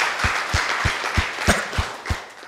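A crowd applauding over a steady deep drum beat of about three beats a second.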